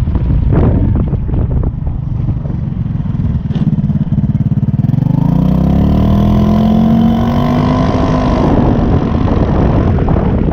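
GY6 150cc single-cylinder four-stroke scooter engine pulling under way, its exhaust made louder with washers. After a rough rumble, the engine note climbs steadily in pitch from about three to seven seconds in as the scooter accelerates, then levels off.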